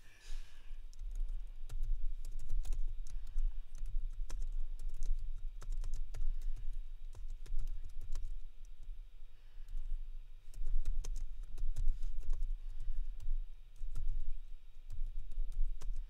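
Typing on a computer keyboard: a run of irregular key clicks, with dull low thumps mixed in.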